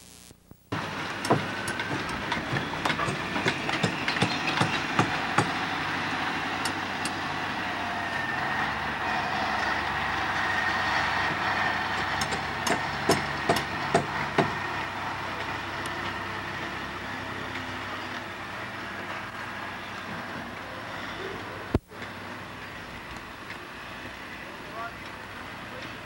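Outdoor construction-site sound: machinery running steadily, with scattered sharp knocks that come in clusters early on and again about halfway through.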